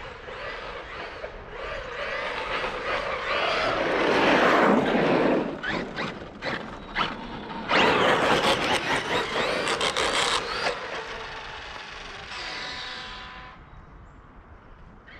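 Traxxas Maxx RC monster truck driving at speed close by: brushless motor whine and tyres hissing over wet, gritty pavement. It swells twice, with a burst of sharp clatter between the passes. It ends in a steady whine as it moves away.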